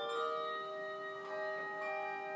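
Handbell choir playing a slow passage: chords ring on and overlap, with a few new notes struck as the earlier ones die away.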